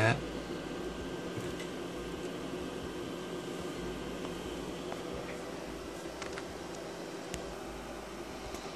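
Steady low hum and hiss of background equipment noise, like a small cooling fan running, with a few faint clicks in the second half.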